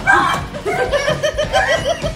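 A person laughing: a quick, rhythmic run of high-pitched laughs through the second half.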